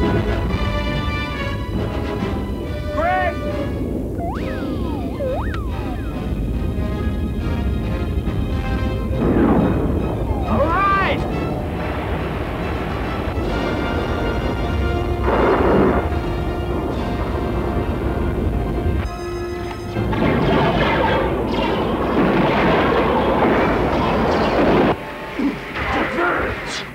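Science-fiction film soundtrack: orchestral score over a continuous low rumble, with sweeping electronic effects and several crashing, explosion-like blasts, the loudest stretch near the end.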